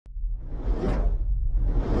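Logo-intro sound effects: two whooshes over a steady low rumble, the first peaking about a second in and the second building toward the end.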